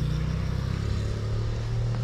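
Steady low hum of an idling motor-vehicle engine.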